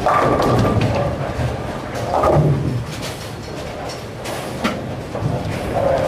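Bowling alley din: thuds and rumbling of balls and pins on the lanes, rising sharply at the start, with a sharp knock about four and a half seconds in.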